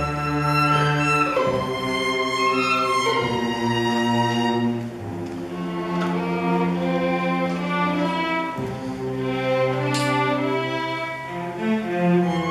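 School string orchestra of violins, cellos and double bass playing a film-score arrangement in long held bowed notes, softer for a few seconds in the middle.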